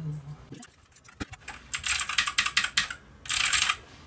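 Typing on a mini mechanical keyboard with clicky blue switches: a run of quick key clicks about two seconds in, then a short, dense flurry near the end.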